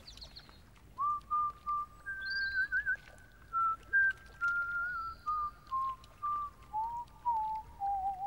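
A whistled melody of clear pure notes, starting about a second in and wandering in small steps, drifting lower toward the end, with a second whistled line overlapping for a while.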